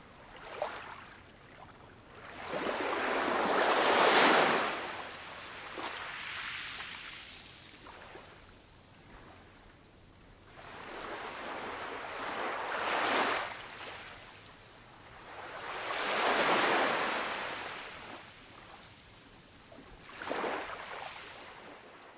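Ocean surf: waves washing in and drawing back, several swells each a few seconds long, the loudest about four seconds in.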